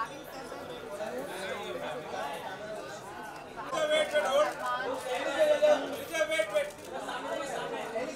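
Overlapping chatter of several voices in a large hall, with louder, clearer calling voices from about halfway through.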